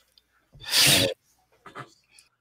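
A person's sharp, breathy vocal burst lasting about half a second, followed near the end by a fainter short breath.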